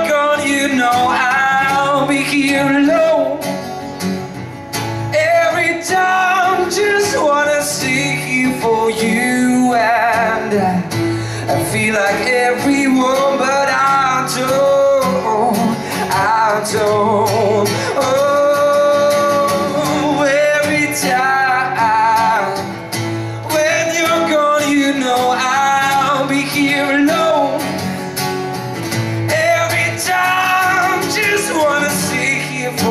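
A man singing a slow song live into a handheld microphone over a musical backing track, his voice carrying the melody throughout.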